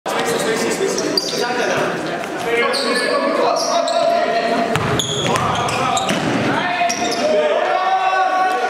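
Live basketball game sound in an echoing gym: a ball bouncing on the hardwood floor, sneakers squeaking, and players calling out.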